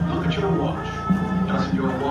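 High school marching band playing on the field, holding sustained chords, heard from the stands.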